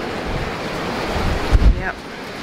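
Strong, gusty wind blowing through bare, leafless trees and buffeting the microphone, with a heavy low rumble from a gust on the mic about one and a half seconds in.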